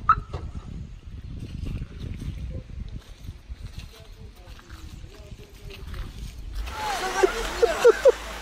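Low, uneven rumble of wind buffeting the microphone, with faint voices. About six and a half seconds in, a steady hiss of light rain comes in suddenly, with people's voices talking over it.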